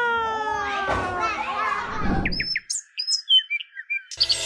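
A small child's long, slowly falling vocal call, then from about two and a half seconds in a run of short, high cartoon bird chirps: a tweeting sound effect.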